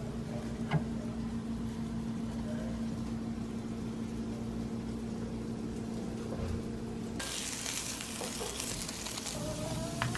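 Food sizzling in a frying pan over a steady low electric hum; about seven seconds in, the sizzling hiss gets much louder and brighter.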